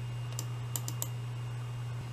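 Four light clicks on a laptop within about the first second, as folders are being opened, over a steady low hum.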